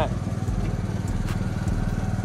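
Small engine of a towable mortar mixer running steadily with an even, low pulsing hum while it turns a stucco mix as cement is poured in.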